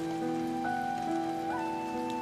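Steady rain falling, with soft background music of long held notes over it.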